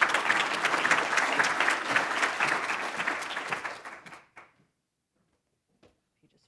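Audience applauding: dense clapping for about four seconds that tapers off and stops.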